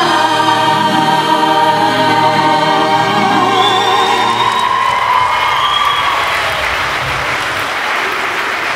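A large group of singers holding the final chord of a song over a backing track, ending about two-thirds of the way in, as audience applause builds and takes over.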